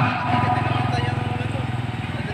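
A motor vehicle engine running steadily with a fast, even low pulse, fading slightly toward the end.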